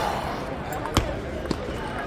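Table tennis ball served and played: sharp clicks of the celluloid ball on paddle and table, the loudest about a second in and a fainter one about half a second later.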